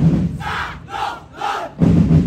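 A group of voices shouting together three times, about half a second apart, in a break in the festival drumming; the drums come back in loudly near the end.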